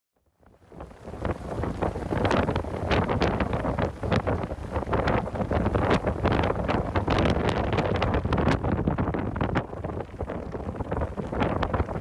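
Wind buffeting the microphone: a rough, uneven rush with irregular gusts that fades in about half a second in.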